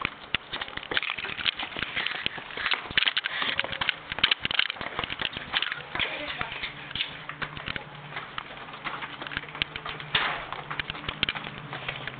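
Handling noise from a handheld camcorder being carried while walking: a steady run of irregular clicks, knocks and rustles, likely with footsteps. A faint steady hum comes in about halfway through.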